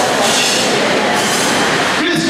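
Church congregation applauding, many hands clapping at once in a dense, steady wash of sound.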